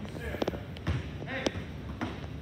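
Basketball bouncing on a hardwood gym floor: three sharp bounces roughly half a second apart.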